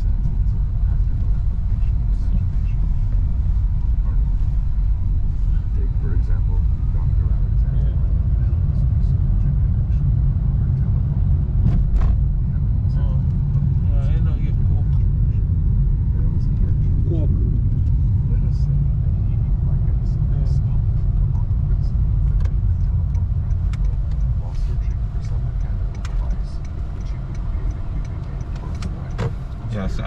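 Steady low road and tyre rumble inside the cabin of a moving Honda Grace hybrid sedan. It eases slightly near the end as the car slows.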